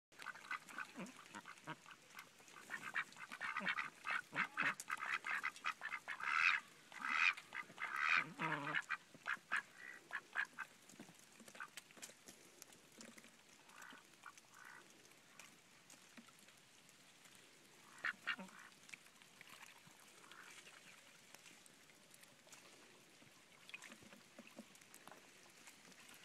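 A small flock of domestic ducks (Pekin, Cayuga and Welsh Harlequin) quacking: a rapid, busy run of quacks for the first ten seconds or so, loudest around six to nine seconds in, then only a few scattered quacks.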